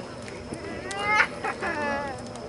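A person's high-pitched shout or squeal, in two short rising bursts in the second half, over low crowd chatter.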